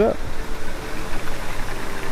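Ethanol fuel pouring from a plastic jug into a car's fuel filler neck, a steady rushing pour.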